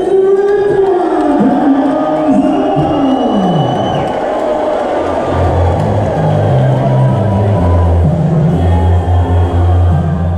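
A crowd cheering over loud music. The first few seconds are full of sweeping shouts or sung notes, and a deep bass part comes in about five seconds in.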